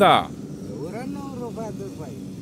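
Speech: a man's voice talking in short phrases, loudest at the very start, over a steady low background hum.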